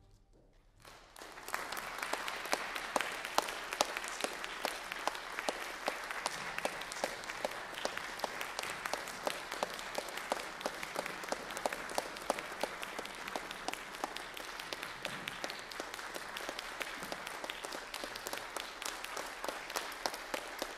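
About a second of near silence, then audience applause breaks out and carries on steadily, with single claps standing out from the mass.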